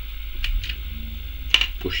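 A few light plastic clicks as the protective cap is taken off the brushes of a new alternator regulator, with one sharper click about one and a half seconds in.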